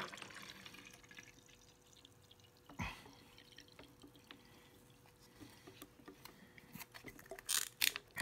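Fruit juice poured in a thin stream into a glass bottle, a faint trickle with drips and fizzing. There is a single knock about three seconds in and a few sharper clicks near the end.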